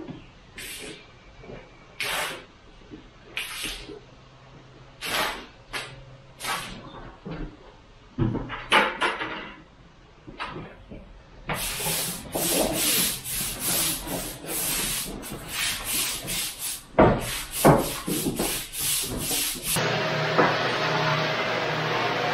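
Long-handled scrub brush scrubbing wet stamped concrete to rinse off liquid release residue. At first the strokes are scattered; from about halfway they come quick and continuous, a few a second. A steady machine drone takes over about two seconds before the end.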